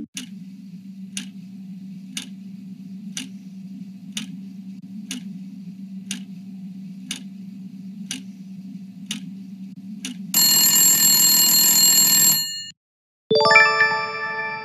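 Quiz-show countdown sound effect: a clock ticking once a second over a low steady drone, then a loud alarm buzzer for about two seconds as time runs out. After a brief silence, a ringing chime sounds as the correct answer is revealed.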